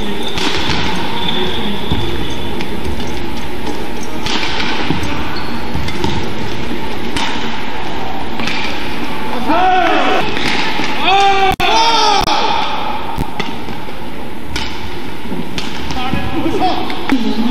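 Badminton rally: sharp racket hits on the shuttlecock every second or two, with shoes squeaking on the court floor several times in the middle, over steady arena crowd noise.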